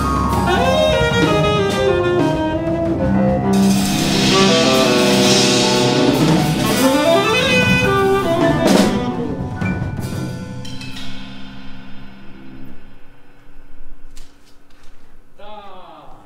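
Live jazz quartet of saxophone, keyboard, drum kit and electric bass guitar playing a full ensemble passage. The tune winds down about ten seconds in and thins out to a few soft, ringing notes.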